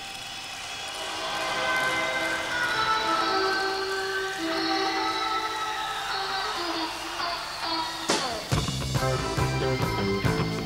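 Live rock band opening a song: sustained chords swell in slowly, then about eight seconds in a sharp hit and the full band comes in with a heavy low end.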